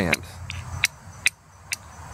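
Steel striker hitting a flint, four sharp high clicks about half a second apart, striking sparks onto char cloth held on the stone.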